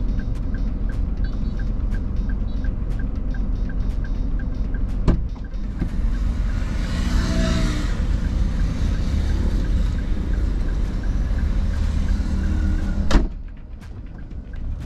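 A car idling, heard from inside the cabin as a steady low rumble with a faint, even ticking. A louder passing engine-like sound swells and fades about halfway through. Two sharp clicks come, one about five seconds in and one near the end, and the rumble drops after the second.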